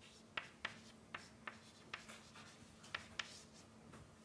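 Chalk writing on a blackboard: faint, short strokes and taps at uneven intervals, about two a second.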